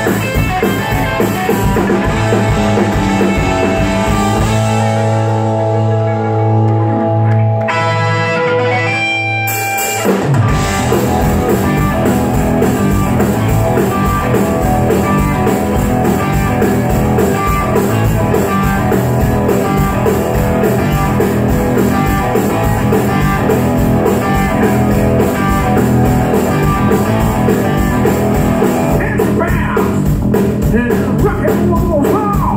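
Live rock band playing loud: electric guitars, bass and drum kit. About four seconds in the drums drop out, leaving held guitar notes and a rising run of notes, then the full band comes back in about ten seconds in and keeps going with a steady beat.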